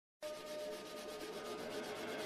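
A pastel stick scratching on pastel paper in quick repeated strokes, starting just after the beginning, with a faint steady hum underneath.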